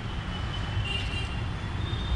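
Steady low rumble of street traffic, with a faint thin high tone running through much of it.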